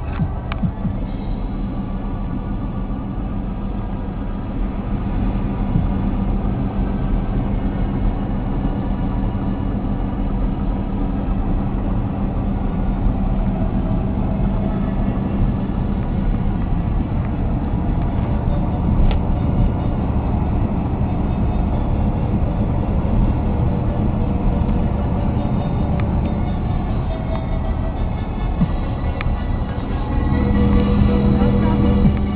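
Inside a Škoda Felicia at motorway speed: steady engine drone and road noise in the cabin.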